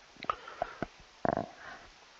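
A few soft, quick clicks at the computer as the debugger steps to the next line of code, then one brief low vocal sound a little past halfway.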